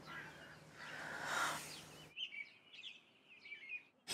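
A soft rushing hiss that swells and then cuts off suddenly about two seconds in, followed by faint birds chirping in short repeated calls.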